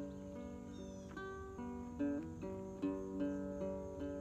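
Small acoustic guitar played solo, single notes picked one after another and left ringing over each other in an instrumental fill between sung lines.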